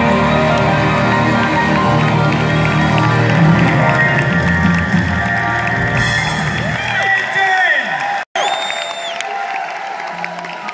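Live rock band music, held full and loud, stops about seven seconds in and gives way to crowd cheering with a loud whistle. The sound cuts out for a split second just before the whistle.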